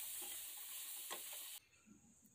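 Pork frying in its own fat in a dry pan, sizzling quietly while it is stirred with a slotted spatula, with a few faint scrapes against the pan. The sound cuts off abruptly about one and a half seconds in.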